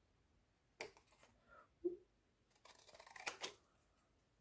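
Scissors cutting thin card stock, with light paper handling: a few separate quiet clicks, then a short run of crisp snips about three seconds in.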